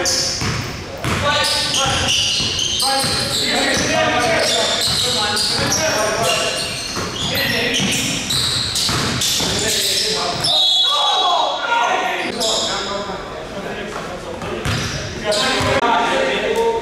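A basketball bouncing on a hardwood gym floor during a game, with players' voices calling out, all echoing in a large hall.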